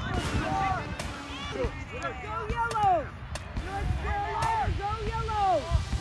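Several voices shouting and calling out across a soccer field, overlapping throughout, with a few sharp knocks and a steady low rumble underneath.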